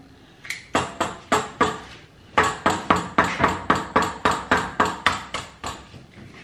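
An egg tapped again and again against the rim of a small stainless steel bowl to crack it. A few taps come about half a second in, then a steady run of about four taps a second.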